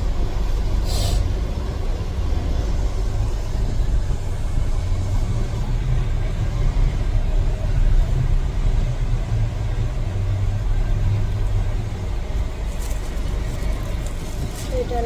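A car driving along, heard from inside the cabin: a steady low rumble of engine and road noise.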